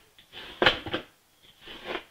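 A small comb drawn through a patch of golden olive synthetic craft fur, a few short strokes about a second apart.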